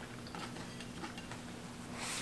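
Faint, scattered crunching of someone chewing thin oven-baked potato chips, a few soft ticks over a steady low hum of room tone.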